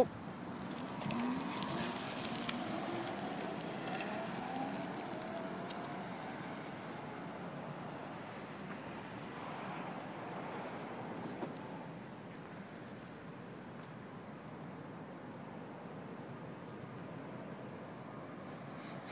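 Electric recumbent trike's Crystalyte X5303 hub motor accelerating hard from a standstill on a 150-volt pack. Its whine rises steadily in pitch for several seconds, with a thin high electronic tone alongside, then fades as the trike pulls away.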